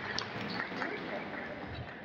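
Faint scattered applause from a small audience, with some murmuring.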